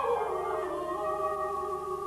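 Operatic singing: a voice slides down in pitch and settles into a long held note.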